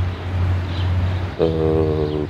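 A low steady hum, then about a second and a half in a man's voice holds one steady drawn-out note, a hesitation sound before he speaks again.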